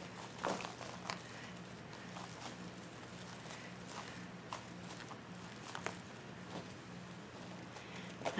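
Faint, scattered rustles and soft clicks of plastic deco mesh being pulled and tucked into a wreath by hand, over a low steady hum.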